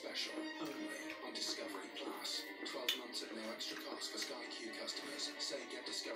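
Television in the background playing music with indistinct voices, thin-sounding with no bass. There is a single light click about three seconds in.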